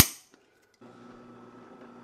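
A spring-loaded center punch snaps once against the caster's metal plate, a single sharp click with a brief ring, marking the spot for a drill hole. Less than a second later a faint steady hum begins, the drill press motor running.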